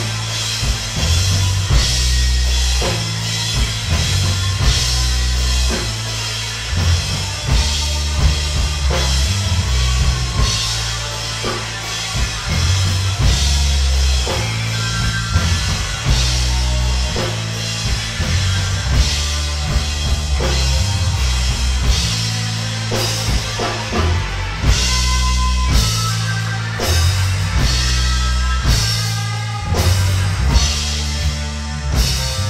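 Live rock band playing an instrumental passage: electric guitars over a drum kit with cymbals, with a heavy low line of changing bass notes.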